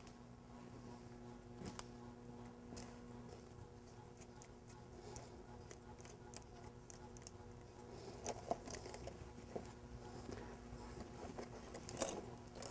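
Faint, scattered metal clicks and taps of bolts and hand tools being fitted into a bare diesel engine block, a little busier late on, over a steady low hum.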